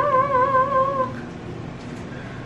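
A woman singing one long, high held note that wavers with vibrato near its end and stops about a second in.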